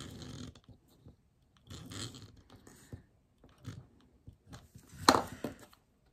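Hands working a paper planner page: several short, scratchy bursts of rubbing on paper, with a sharp click about five seconds in.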